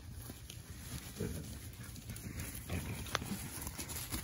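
A herding dog and sheep moving over grass: soft, scattered footfalls and faint short animal sounds, with one sharp click about three seconds in.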